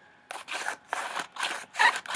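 Cardboard charging handle on a homemade cardboard rifle model being racked back and forth by hand: about five quick dry scrapes of cardboard sliding on cardboard, two to three a second.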